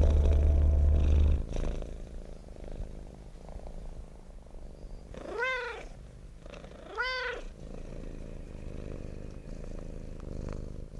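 A domestic cat purring steadily after a closing stretch of music cuts off about a second and a half in, with two short meows about five and seven seconds in, each rising and then falling in pitch.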